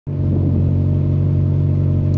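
Flatbed pickup truck's engine idling steadily, a low, even rumble.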